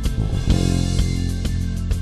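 Live band music, an instrumental passage: a steady drum beat of about two strikes a second under sustained bass and melody notes.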